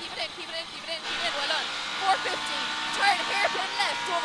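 Toyota Corolla Twin Cam rally car's twin-cam four-cylinder engine running flat out, heard from inside the cabin, settling into a steady high note about a second in. A voice talks over it throughout.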